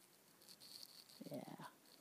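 Near silence: faint outdoor background, with a quietly spoken "yeah" a little past the middle.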